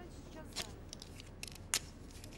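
Papers and a pen being handled at a desk while documents are signed: faint rustling with a few sharp clicks, the loudest near the end.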